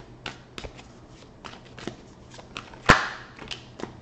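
A deck of tarot cards being shuffled by hand: a run of soft, quick card clicks, with one sharp, louder click about three seconds in.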